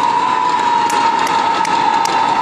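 A sustained high-pitched tone held at one pitch over the steady noise of a large arena crowd, with a few faint sharp ticks.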